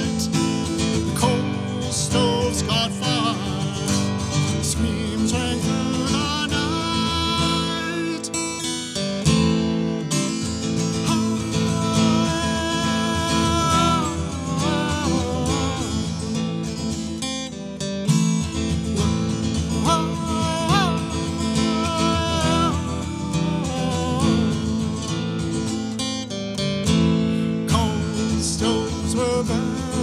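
A folk ballad played on acoustic guitar, strummed and picked steadily, with a melody line over it that bends in pitch. It pauses briefly twice, about nine and seventeen seconds in.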